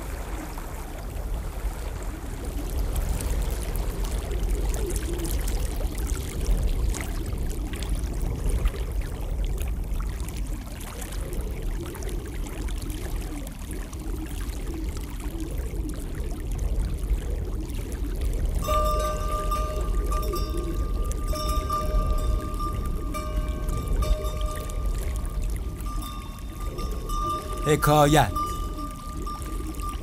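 Film soundtrack ambience: a steady low rumble with faint voices. About two-thirds of the way in, a steady high held musical note with a lower companion tone enters and holds.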